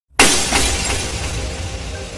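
Glass-shattering sound effect for an intro, starting abruptly a moment in and fading away, over a low bass rumble of music.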